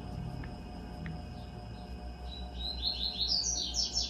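A bird chirps in the second half: a quick run of about ten short, high notes, each sliding downward, each starting a little higher than the last.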